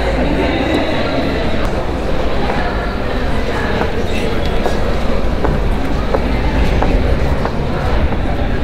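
A loud, steady low rumble with indistinct voices behind it and a few scattered knocks.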